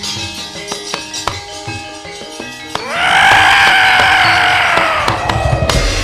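A gamelan ensemble plays struck bronze keys and drum. About three seconds in, a loud, long elephant-like trumpeting call swoops up and then slowly sinks, with a low rumble and a sharp strike under its end.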